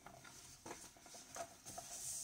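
Faint handling of a hardcover picture book's laminated pages: a few soft taps, then a paper swish near the end as a page is turned and smoothed flat.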